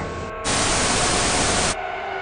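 TV static hiss used as a transition sound effect: a steady burst of white noise that starts about half a second in and cuts off suddenly near the end.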